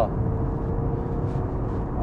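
Steady low cabin drone of a Genesis EQ900 Limousine cruising at highway speed: road, tyre and engine noise heard from inside the car.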